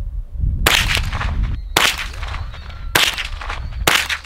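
.22 rifle firing four shots about a second apart, each a sharp crack followed by a short echo.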